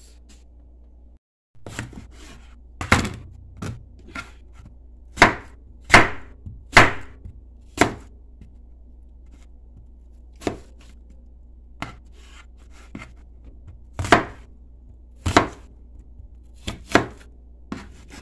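Chef's knife slicing apples on a plastic cutting board: over a dozen sharp chops of the blade meeting the board, at an irregular pace with pauses between runs of cuts.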